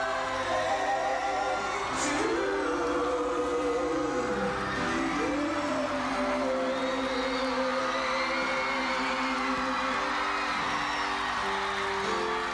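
Live pop concert music from a stage band, with long held notes that slide between pitches, over a stadium crowd cheering and whooping.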